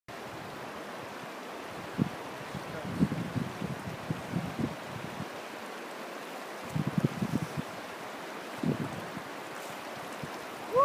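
Steady rush of the Gallatin River's flowing water, with irregular splashing as a head is dunked in and pulled out: a splash about two seconds in, then bouts of splashing around three to five seconds and again around seven and nine seconds.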